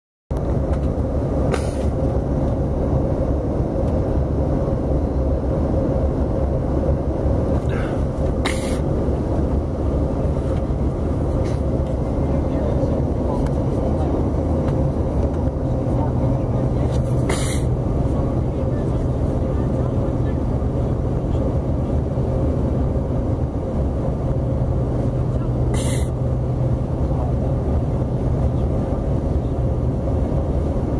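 Airliner cabin noise during the descent: the steady low roar of the jet engines and airflow heard from inside the cabin, with a faint steady hum. Four short clicks stand out over it.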